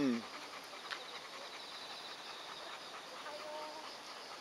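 Insects trilling steadily at a high pitch, faint, in a continuous evenly pulsing buzz. A person's voice ends a word right at the start, and a brief faint tone sounds near the end.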